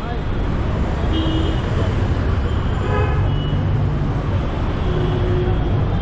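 Busy city road traffic: a steady rumble of engines and tyres, with short horn toots about a second in and again around three seconds in.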